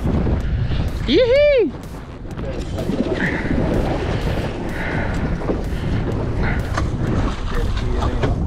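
Wind buffeting the microphone in a dense low rumble with irregular thumps, over the wash of choppy sea. A man's single high whoop rises and falls about a second in.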